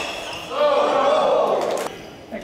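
A person's drawn-out shout that rises and then falls in pitch over about a second and a half, ending with a single sharp knock.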